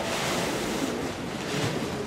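Steady, even hiss of the hall's background noise during a pause in the talk.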